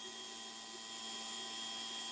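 Electric fuel pump of a KTM 690 running steadily with a faint, even hum, pushing against a pressure gauge with no fuel flowing out. The pressure tops out at what the mechanic calls the pump's limit, which he takes as a sign of a weak pump.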